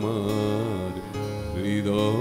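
Live Bengali folk music: a wavering sung note trails off, and the band carries on with acoustic guitar strumming over held keyboard chords. A voice rises back in near the end.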